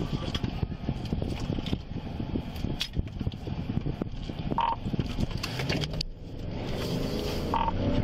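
Cabin noise of a police patrol car on the move: a steady low rumble with irregular crackling and clicks. A short high beep comes about four and a half seconds in and another near the end, with a brief rush of hiss between them.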